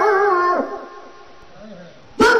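A man's singing voice holds a wavering note over steady accompanying tones, then glides down and stops about half a second in. A quieter pause follows, with faint brief pitched sounds.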